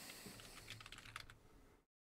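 Computer keyboard being typed on: a quick, faint run of key clicks as a short word is typed, after which the sound cuts off suddenly near the end.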